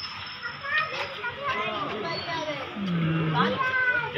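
Several men's voices talking and calling out over each other, lively and overlapping, with one voice holding a long low call about three seconds in.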